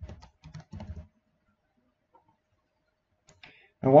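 A few quick computer-keyboard keystrokes in the first second, typing a short number into a field, then near silence with a couple of faint clicks before a man's voice starts at the very end.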